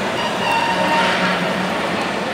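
Steady background noise of a busy shopping mall: a constant even rush with a few faint steady tones running through it.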